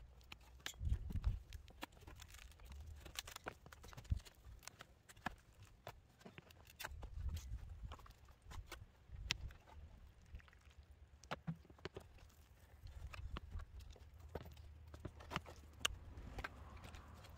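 Handling noise from a stiff epoxy-resin composite dash shell being gripped, turned over and set against wooden sawhorses: scattered light clicks and knocks with a few low thumps.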